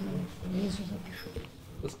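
A man's low, hesitant voice: a few murmured, drawn-out sounds in a pause between sentences, fading out near the end.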